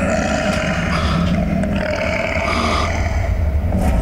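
Tiger growling, a deep continuous rumble with no break.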